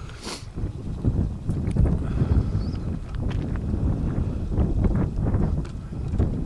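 Light breeze buffeting the camera's microphone: an uneven low rumble with scattered short knocks.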